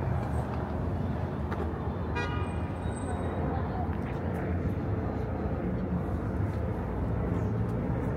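Steady street traffic rumbling below, with one short car horn toot about two seconds in.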